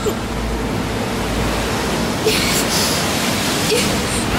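Steady rush of wind and breaking sea surf, with a low rumble of wind on the microphone through the first two seconds and a brighter hiss a little past halfway.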